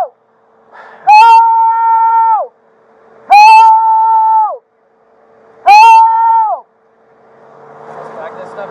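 A man screaming: three long, loud, high-pitched held cries about two seconds apart, each starting sharply and falling away at the end. A rushing noise rises near the end.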